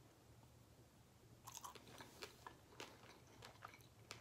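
Faint mouth sounds of someone chewing a mouthful of baked pasta: soft smacks and clicks that begin about one and a half seconds in and come irregularly, over a low steady hum.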